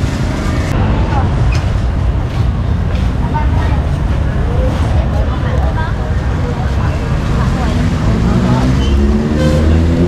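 Busy street noise of traffic and motorbikes, with people talking. Near the end a motorbike engine note rises as it speeds up.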